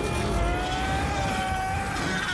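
Film sound effect of a surging energy beam: a rushing rumble with a whine that slowly rises in pitch and holds.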